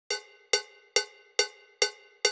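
Cowbell struck alone on a steady beat, five strikes about 2.3 a second, each ringing briefly: the cowbell count-in that opens a rock song.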